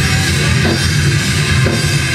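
Rock band playing live: electric guitars over a steadily driving drum kit with cymbals, loud and dense throughout.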